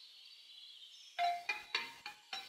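Background music: quiet at first, then a few struck mallet-percussion notes, like marimba or glockenspiel, come in after about a second.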